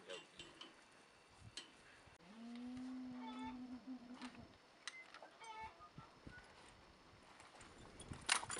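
A cow giving one faint, long moo that holds a steady pitch for about two seconds.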